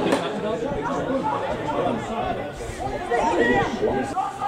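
Several people talking and calling out at once at a football match, their voices overlapping into a steady chatter, with a single sharp click at the start.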